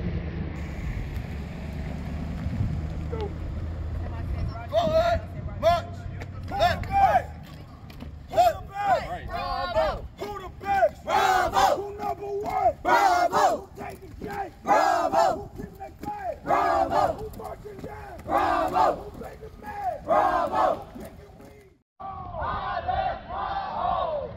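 A group of cadets chanting a military marching cadence in unison, loud shouted phrases repeating every second or two. A low rumble comes before the chanting starts, about five seconds in, and the sound cuts out briefly near the end before the chanting resumes.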